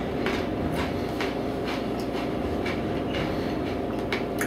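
A hard pretzel being chewed close to the microphone: crunches repeating about twice a second over a steady low hum.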